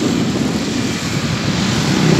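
Steady rumble of a vehicle's engine mixed with wind and road noise while travelling along a street, with traffic passing close by.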